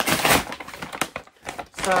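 Brown paper mailing bag crinkling and crackling as it is pulled open by hand, loudest in the first half second, then lighter scattered crackles.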